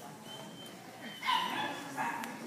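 A dog barks a little over a second in, a high-pitched yappy call.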